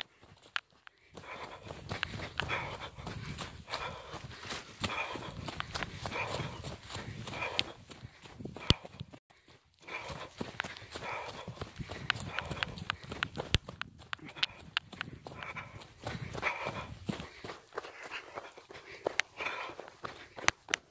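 A trail runner's footsteps on a dirt path, with heavy, rhythmic breathing close to the microphone and a brief lull about halfway.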